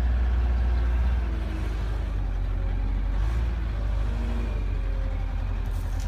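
Front-end loader's engine running steadily under load as it lifts a full bucket of mulch, a low rumble that eases slightly about a second in.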